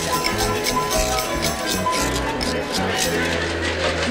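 1960s rock band recording playing a passage without lead vocal: drums and shaken hand percussion keep a steady beat over piano and bass. Held bass notes come in near the end.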